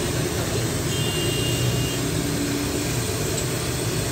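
Steady street traffic noise from motorcycle and car engines, with a thick stream of milk poured from a steel churn splashing into a large steel pan of milk.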